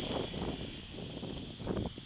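Wind buffeting the microphone in uneven gusts, a low, irregular noise with no clear tone.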